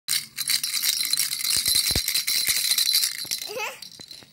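Plastic baby rattle shaken hard and fast, a dense, loud, high-pitched rattling that stops about three and a half seconds in. Near the end a baby gives a short gliding vocal sound.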